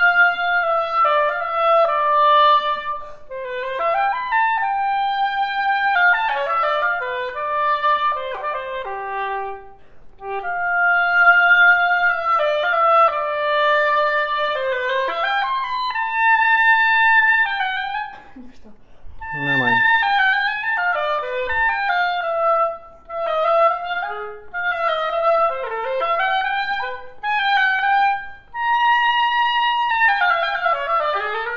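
Oboe playing a melodic passage in running phrases, with short breaks about ten seconds in and again around eighteen seconds in.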